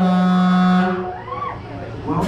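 A loud, horn-like tone held for about a second, then a short rising-and-falling sound.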